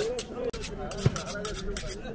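A butcher's knife scraping in quick repeated strokes, several a second, with one heavy chop about a second in.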